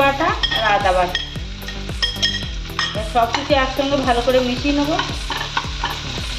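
Diced vegetables and chickpeas sizzling in a kadai as a steel spatula stirs them, over background music with a wavering melody and a steady beat.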